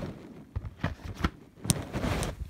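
Handling noise as DVD box sets and the phone are moved about: about five light clicks and knocks of plastic cases over a low rubbing rumble.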